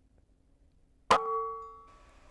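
A single shot from a Benjamin Marauder PCP air rifle: one sharp crack about a second in, followed by a short metallic ring that fades away.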